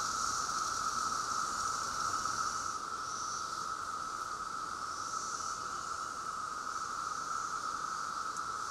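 Chorus of Brood X periodical cicadas: a steady, unbroken drone, with a higher hiss above it that swells and fades every second or two.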